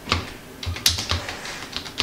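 Typing on a computer keyboard: an irregular run of key clicks, with a few louder taps about a second in.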